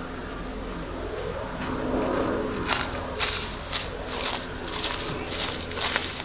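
Footsteps crunching on dry straw-covered ground, about two steps a second, starting a little before halfway and louder toward the end, over a faint steady hum.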